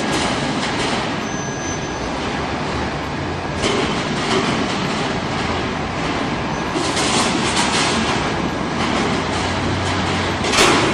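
Car factory machinery: a steady mechanical rumble and rattle with scattered clacks, a sharper clack about three and a half seconds in and a run of them around seven to eight seconds.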